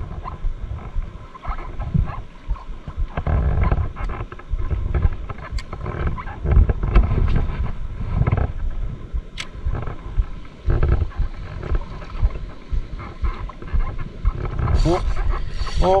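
Wind buffeting the camera microphone over open water on a kayak, with the rustle and a few sharp clicks of a spinning rod and reel being handled. In the last second, a man gives short rising 'oop' calls as a fish strikes.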